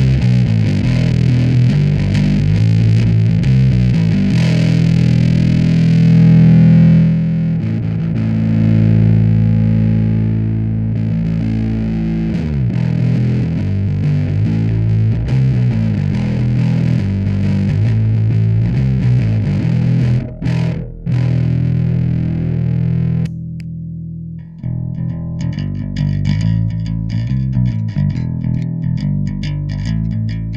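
Ibanez SR300E electric bass played through an EHX Big Muff Green Russian fuzz pedal into a Fender Rumble 100 bass amp: thick, heavily distorted sustained bass notes. About three quarters of the way through, the sound dips briefly and the fuzz drops out, and the bass goes on with a cleaner, less distorted tone.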